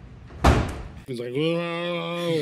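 A door slammed shut once, a single sharp bang about half a second in. It is followed by a man's long, drawn-out vocal sound.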